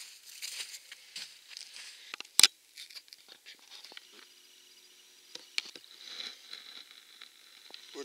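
Rustling, crinkling handling noise as the camcorder is picked up and turned, with scattered small clicks and one loud sharp knock about two and a half seconds in.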